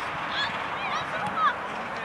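Many short honking calls from a flock of birds, overlapping at different pitches, with one louder call about one and a half seconds in.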